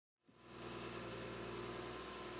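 Forestry forwarder's diesel engine running steadily, fading in from silence in the first half second.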